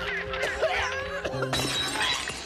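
A glass bottle shattering about one and a half seconds in, as a cartoon sound effect over dramatic background music.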